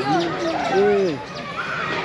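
A person's voice in two drawn-out, sing-song calls in the first second, each rising and then falling in pitch.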